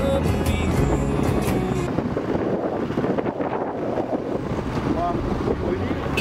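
Background music with a beat for about the first two seconds, then steady wind rush on the microphone and road noise from a moving motorcycle.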